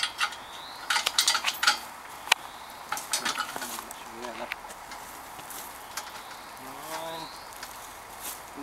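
Steel chain clinking and rattling as it is wrapped and hooked around a log under a log-carrying cart, in bursts of sharp metallic clicks, the loudest about one to two seconds in.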